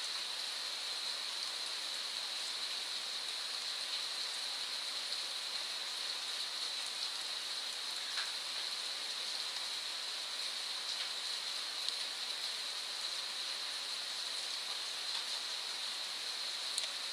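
Steady electronic hiss from the recording microphone, with a faint high-pitched whine running through it and a few faint clicks.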